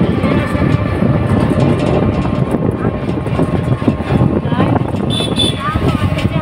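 Riding inside a moving auto-rickshaw: its engine runs steadily under constant road and wind rumble.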